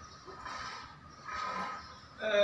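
A pause in a man's talk, with only faint, indistinct background sound.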